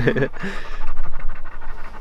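A dog panting close to the microphone on a warm day, a quick, uneven rasp with no voice in it.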